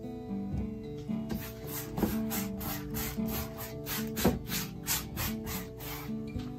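Wide flat paintbrush stroking rapidly back and forth over a wet, blank canvas: a rhythmic scratchy swishing, about four strokes a second, starting about a second in. Acoustic guitar background music plays under it.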